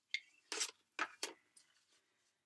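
A plastic mixing cup being handled, giving about five short scrapes and knocks in quick succession, as the cup of dry plaster-type casting powder is picked up and moved.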